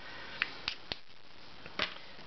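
A few light clicks and taps, about five in two seconds, from pens being handled.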